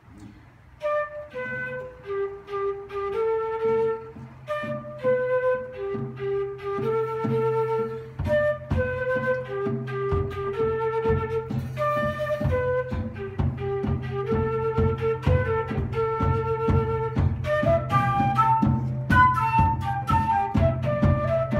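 Concert flute playing a melody of held notes, over a steady low drone; a regular drum beat joins about eight seconds in, and the melody climbs higher near the end.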